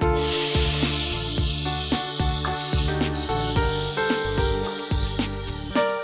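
Food sizzling in a hot pan, starting suddenly and slowly dying down, over background music with a steady beat.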